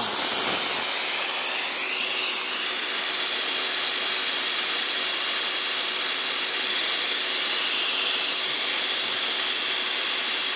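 Mr. TIG Series PowerPlasma 50 plasma cutter torch burning in open air, a steady hiss of compressed air and arc with a faint steady hum. The arc stays on after the trigger is released because the machine's toggle switch is set to CNC mode.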